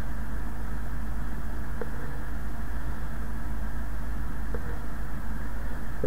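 Steady low hum and hiss of background noise, unchanging throughout, with a couple of faint ticks about two seconds in and near the end.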